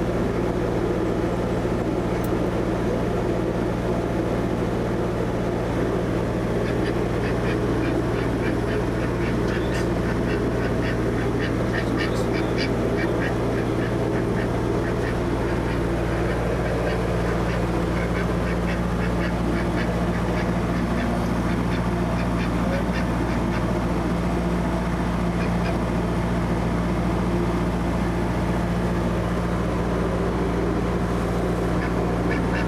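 A narrowboat's diesel engine running steadily under way, a constant low hum, while a white domestic duck quacks in quick runs of short calls, thickest in the middle stretch.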